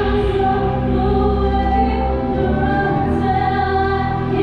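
Live band music: choir-like voices sing sustained, held chords over a steady low bass, with little audible drumming.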